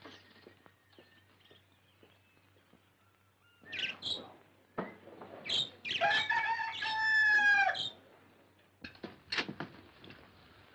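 Caged birds in a bird shop chirping faintly, a couple of short squawks, then a cockerel crowing once, loud and nearly two seconds long, about six seconds in.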